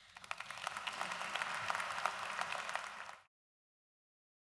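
Audience applauding, building up over the first second and holding steady, then cut off suddenly a little over three seconds in.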